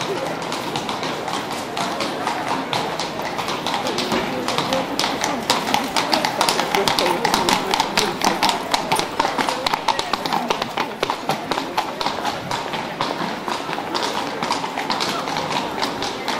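Shod hooves of two carriage horses clip-clopping on the paved street as a horse-drawn carriage passes, the hoofbeats loudest in the middle and fading toward the end. Crowd chatter runs underneath.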